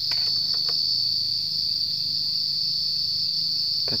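Insects chirring in a steady, high-pitched drone, with a few faint clicks in the first second.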